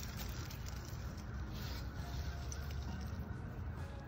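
Steady low wind rumble on the microphone, with faint rustling as pine needles and nest debris are picked from a nestling great horned owl's talons.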